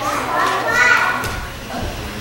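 A high-pitched voice calls out briefly in the first second or so, with no clear words.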